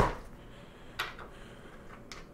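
Handling sounds of a fabric photo reflector and its support rods being assembled by hand: a sharp knock at the start and a short click about a second in, with faint rustling of the reflective cloth between.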